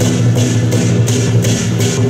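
Percussion music for a dragon dance: cymbals crashing about three to four times a second over a steady low drone.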